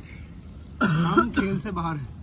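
A man's voice: a short, loud vocal burst about a second in that starts with a harsh, throat-clearing onset and runs into voiced sound, over low background chatter.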